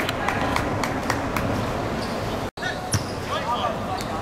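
Game sounds of a small-sided football match on a hard court: a run of sharp taps from the ball and players' shoes, about three a second, with players calling out. The sound cuts out for an instant about two and a half seconds in.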